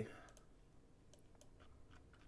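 A few faint, scattered small clicks against near silence.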